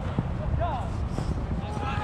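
Faint, distant shouts of players on a small-sided football pitch, over a steady low rumble.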